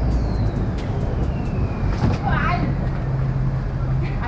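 Low, steady rumble of street traffic, with a vehicle engine humming nearby through the second half. A short burst of a voice comes a little after two seconds in.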